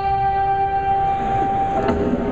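A live band's closing note: one steady held tone over a low rumble from the stage, which breaks up just before the end.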